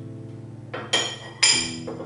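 Glazed ceramic ramekin set down upside down on a ceramic plate as the lava cake is turned out: two sharp clinks about half a second apart, each ringing briefly, the second the louder.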